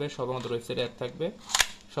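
One sharp click about one and a half seconds in, as the long magazine is pushed home into the grip of an ARMA Glock 18 shell-ejecting soft-bullet toy pistol.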